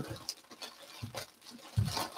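Faint clicks, knocks and rustles of small objects being handled and moved around, with a soft low thump near the end.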